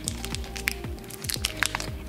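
Background music, over which the foil wrapper of an almond paste log gives a few short clicks and crinkles as it is cut and peeled back from the end.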